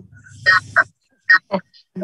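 Speech only: a voice saying a few short words with pauses between them.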